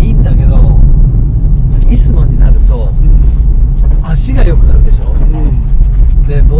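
Steady low drone of engine and road noise inside the cabin of a moving Nissan Fairlady Z NISMO with its twin-turbo V6, with voices talking over it at times.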